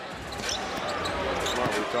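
Basketball game sound in an arena: a steady crowd murmur with the ball being dribbled on the hardwood court and a few short high squeaks.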